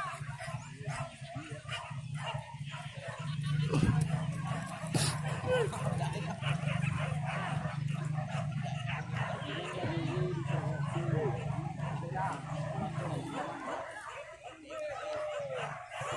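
Hunting dogs barking and yelping during a wild-boar chase. A steady low hum sits underneath from about three seconds in until near the end.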